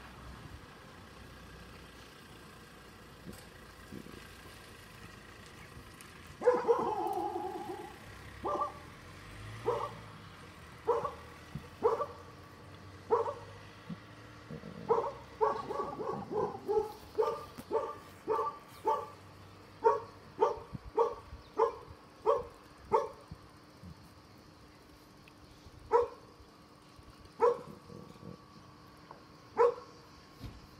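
A dog barking over and over. It starts about six seconds in with one drawn-out call, then gives short barks about one a second, in a quicker run around the middle and more spaced out near the end.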